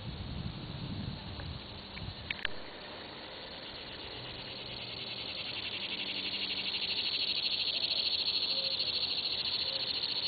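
Insects making a high, fast-pulsing buzz that swells steadily louder from about four seconds in. A couple of short clicks come about two seconds in.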